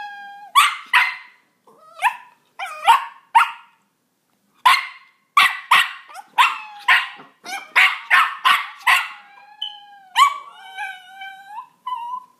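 A miniature pinscher barking in short, sharp barks, coming in clusters and in a fast run through the middle at about two a second, set off by cat sounds from a phone soundboard. A longer drawn-out, wavering cry comes near the end.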